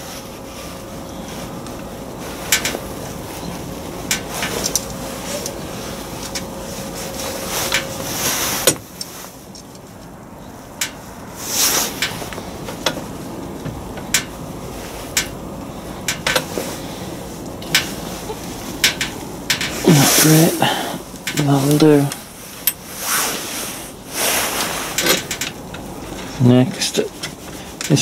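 Small metal parts of a clutch pedal box and servo linkage being handled and fitted: scattered clicks, clinks and light knocks. A steady low hum sits under the first third.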